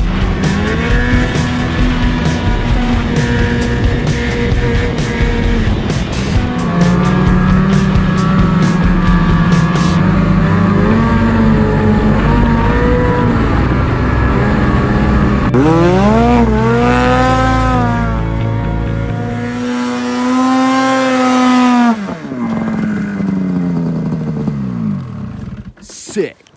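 Snowmobile engine revving and easing off over and over while riding a trail, with a sharp climb in pitch about fifteen seconds in and a fall-off near the end.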